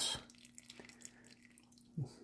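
Faint drips of broth falling from a raised ladle back into a pot of soup, over a low steady hum.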